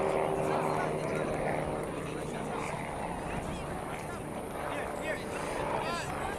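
Open-air soccer field ambience: a steady low rumble of wind on the microphone with a faint low hum, and distant, indistinct voices of players and spectators.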